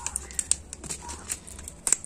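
Light, irregular crinkling and small clicks of a seed packet being handled by hand.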